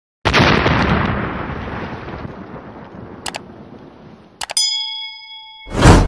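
Edited intro sound effects: a loud boom that fades away over about four seconds, a couple of clicks, then a bell-like ding that rings for about a second, and a swelling whoosh at the end.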